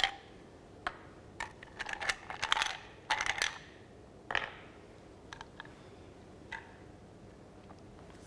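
Ice cubes clinking against a cup and each other as they are taken out, then each set down on a block with a light knock. The sharp clicks come in quick clusters, with the loudest knock about four seconds in, followed by a few faint ticks.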